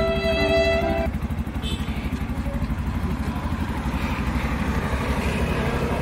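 Auto-rickshaw engine running at idle with a steady low pulse, under background music that stops about a second in.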